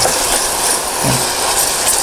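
Chopped onion frying in margarine in a stainless steel saucepan, a steady sizzle, with a wooden spoon stirring and scraping through it.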